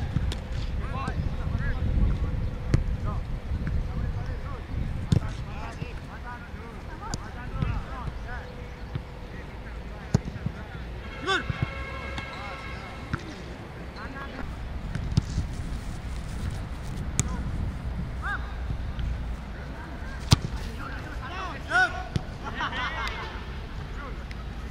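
Footballs being kicked and caught in goalkeeper practice: scattered sharp thuds, the sharpest about twenty seconds in. Voices shout in the distance and wind noise sits on the microphone throughout.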